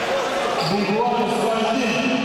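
People's voices talking and calling out across the wrestling hall, with several voices overlapping.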